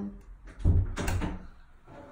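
Electric roller shutter set going by its wall button: a low thud and a couple of clunks about half a second in, then a faint steady run as the shutter moves.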